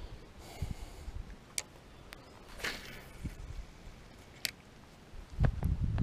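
Mostly quiet, with a few isolated sharp clicks, one sniff about two and a half seconds in, and a low rumble on the microphone near the end.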